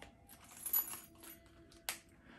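Light clicks and rustling as a small leather key holder is handled, with one sharp click near the end.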